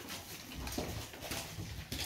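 Ferrets at play, rustling and scrabbling about with small irregular scuffs and clicks.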